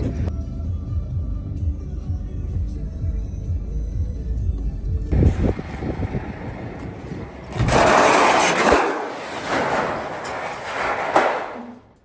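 Tractor running with a low rumble. From about eight seconds, old corrugated tin sheets slide out of a tipping trailer onto concrete with a loud rushing metallic clatter that stops suddenly near the end.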